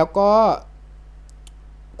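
A man's voice says a short phrase, then pauses; in the pause two faint, brief clicks sound a fraction of a second apart over a faint steady low hum.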